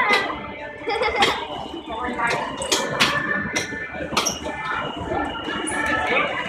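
Indistinct voices and background music in a large room, broken by several sharp clicks at irregular intervals.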